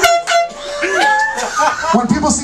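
A short air-horn blast of about half a second, then voices.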